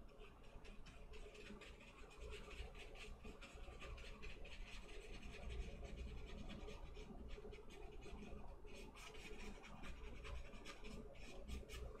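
Small paintbrush scratching and dabbing thinned oil paint onto paper in many short, quick strokes, faint and irregular.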